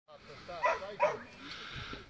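A young border collie pup barking twice in quick succession, about half a second and a second in.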